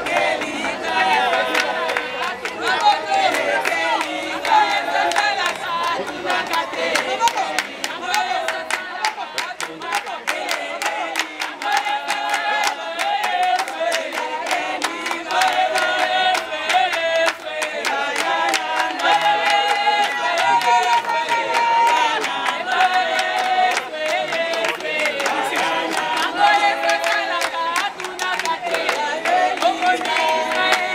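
A group of African women singing together unaccompanied, clapping their hands in a steady rhythm.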